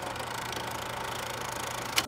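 Film projector sound effect: a steady, rapid mechanical clatter with a faint hum underneath.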